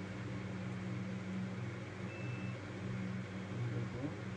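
Steady low machine hum with a faint hiss behind it, and a short high beep about two seconds in.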